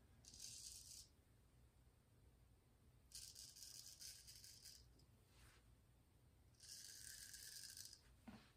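Gold Dollar Classic straight razor scraping through two days of stubble: three faint scraping strokes, the first short and the next two each about a second and a half long.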